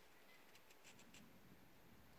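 Near silence: room tone, with a few faint ticks about a second in.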